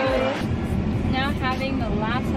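A woman talking; about half a second in, a steady low rumble starts, heard inside a car cabin, with her voice carrying on over it.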